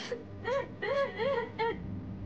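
A teenage girl sobbing hard: a sharp breathy gasp, then four short wailing cries in quick succession, each rising and falling in pitch, over a steady low hum.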